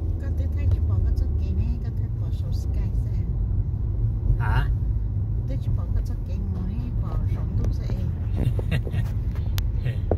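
Steady low rumble of a car driving, heard from inside the cabin, with quiet voices talking over it.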